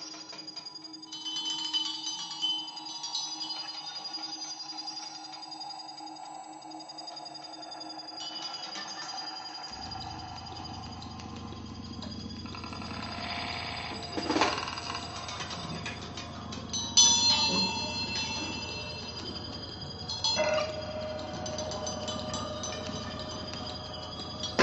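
Quiet improvised music from drum kit, double bass and live electronics: held tones and slow glides, a low drone coming in about ten seconds in, and a few sharp accents later on.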